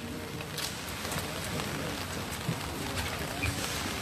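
Quiet outdoor ambience with faint murmured voices and a few light clicks.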